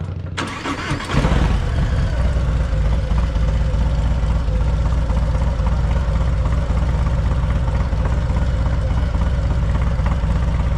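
Harley-Davidson Fatboy's Screamin' Eagle Stage 4 117 V-twin started about a second in, with a brief crank, then settling into a loud, steady idle.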